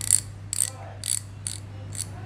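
Spinning fishing reel's drag clicker ticking as the spool is turned by hand: a string of short, crisp metallic clicks, about two a second.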